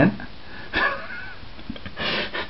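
A person sniffing between sentences: a short noisy intake of breath through the nose about a second in, and another right at the end.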